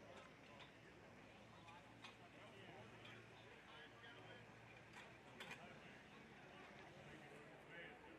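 Near silence: faint background voices of people talking, with a few faint clicks.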